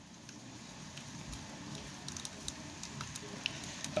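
Faint plastic clicks and rubbing as hands work at a Transformers Masterpiece MP-29 Shockwave figure's arm, struggling to pop its hand off the ball joint.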